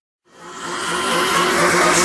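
A car engine running hard with rushing road noise, fading in from a brief silence and growing louder over the first second or so.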